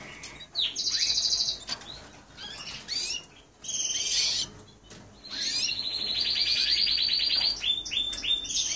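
Spanish Timbrado canary singing: short, fast trills early on, then a long, even rolling trill of over two seconds in the second half, with short chirps in between.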